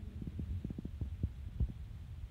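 Handling noise from a hand-held phone being moved while filming: a steady low rumble with quick, irregular soft thumps.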